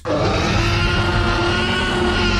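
A loud, sustained transition stinger that starts abruptly and holds steadily, with several level tones under a dense wash of sound.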